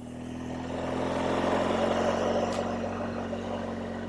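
BMW motorcycle running at low road speed, picking up a little speed, with a steady low engine note under a rush of wind and road noise that swells about halfway through and then eases.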